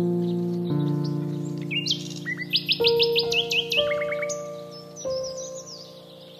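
Background music of slow, held chords that change every second or two, with a quick run of high bird chirps and tweets in the middle and fainter chirps later.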